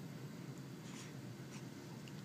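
Quiet room with a low steady hum and a brief soft rustle about a second in.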